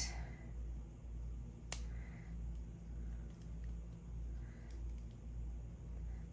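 Quiet handling of beading cord and small jewelry tools on a tabletop: one sharp click about two seconds in and a few fainter clicks later, over a low steady hum.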